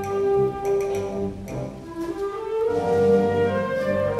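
Symphonic wind band playing a concert pasodoble: sustained chords, which thin out and drop in level a little before halfway, then swell back.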